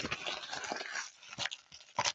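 Baseball card pack wrappers rustling and crinkling as they are torn open and crumpled by hand. There is a dense rustle for about the first second, then a few sharp crackles.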